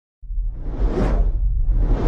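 Logo-reveal sound effects: a brief moment of silence, then a sudden deep rumble with two whooshes that swell and fade, about a second apart.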